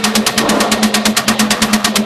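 Hard techno from a DJ mix in a breakdown with the kick drum dropped out: a rapid, even run of sharp percussion hits, about eight a second, over a pulsing mid-range tone.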